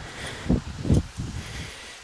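A pause in a man's talk filled by steady background rumble and hiss, with a sharp click at the start and two soft low thumps about half a second apart.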